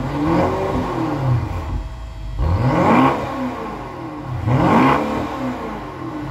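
Twin-turbo V8 of a 2019 BMW 750i, breathing through an aftermarket Carven exhaust, idling and revved three times. Each rev climbs and falls back to idle; the second and third are sharper than the first.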